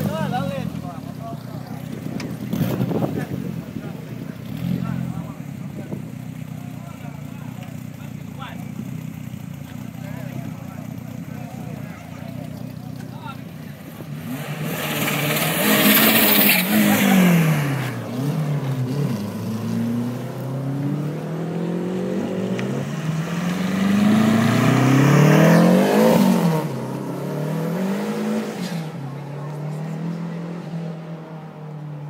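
Renault 5 GT Turbo engines, first idling steadily, then revved hard as the cars accelerate away. The engine note climbs and drops again and again through gear changes, loudest about halfway through and again about three quarters of the way in.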